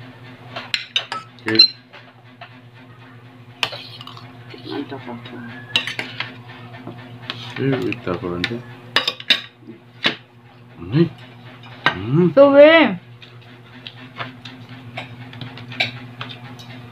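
A metal spoon clinking and scraping against a dish while someone eats, in irregular sharp clicks, over a steady low hum. Short vocal sounds, a brief word or hum, break in now and then; the loudest comes about twelve to thirteen seconds in.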